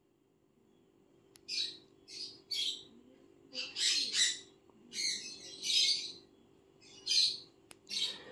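Sun conure chick giving a series of about eight short, raspy squawks, a fraction of a second each, with gaps of up to a second between them.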